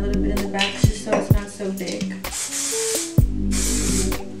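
Background music with a steady beat. Over the second half comes the hiss of an aerosol can of Kenra hairspray being sprayed onto the hair in two short runs.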